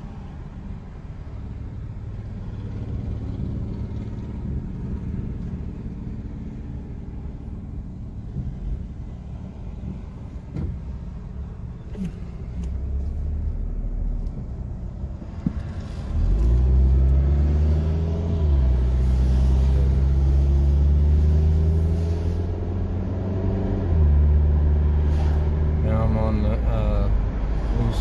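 Car engine heard from inside the cabin: a low, steady idle rumble at first, then, about sixteen seconds in, it grows louder and its note climbs as the car pulls away, falling back twice at the gear changes before rising again.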